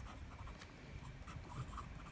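Pelikan M805 fountain pen's medium nib writing on paper: a faint run of quick little pen strokes as letters are formed. The nib is smooth with a bit of feedback and not scratchy.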